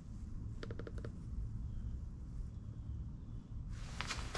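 Low steady room rumble, broken about half a second in by a quick run of about five short, high beeps.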